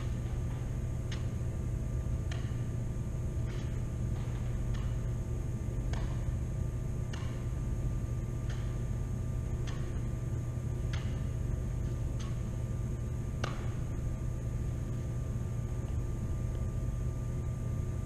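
A bean bag repeatedly tossed up and caught on a table tennis paddle: light slaps at an even pace of about one every 1.2 seconds, about eleven in all, stopping near the end. Under them a steady low hum of building ventilation runs throughout and is the loudest sound.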